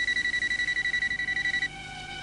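Electronic telephone ringing: a high, fast-trilling ring that lasts about a second and a half and then stops.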